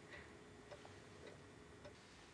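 Near silence: faint room tone with small, evenly spaced ticks.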